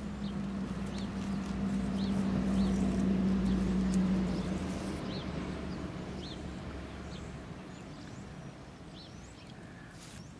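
A steady low engine drone swells over the first few seconds, then fades away by about halfway through. A bird gives short high chirps every second or so throughout.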